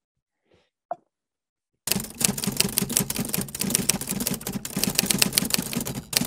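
A dense, rapid clatter of sharp clicks starts abruptly about two seconds in and runs on, after a single faint click about a second in.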